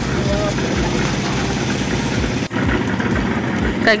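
Construction machinery engine running steadily with a low, regular throb, briefly dropping out about two and a half seconds in.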